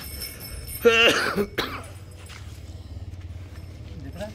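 A short, pitched vocal sound about a second in, the loudest thing here, over a faint steady background.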